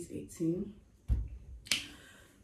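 A woman's voice speaking softly, then a low thud about a second in and a sharp click shortly after.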